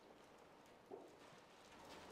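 Near silence: room tone, with two very faint ticks, one about a second in and one near the end.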